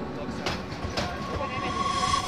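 Electric multiple-unit passenger train rolling past: a steady running noise with sharp wheel clicks about every half second.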